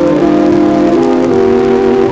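Big band music played back from a 1940s transcription disc: the band holds sustained chords, moving to a new chord about a second in.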